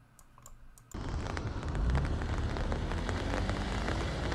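Heavy rain hitting an umbrella overhead, starting suddenly about a second in after a few faint clicks, with a deep rumble underneath.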